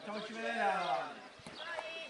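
Players' voices calling out across an outdoor futsal court, one drawn-out call falling in pitch in the first second. A few short, light knocks follow in the second half.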